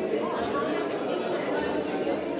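Steady background chatter of many overlapping voices in a hall, with no single voice standing out.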